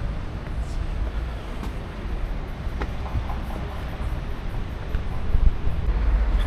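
Low, fluctuating rumble of wind buffeting the microphone outdoors, with a couple of faint clicks about two and three seconds in.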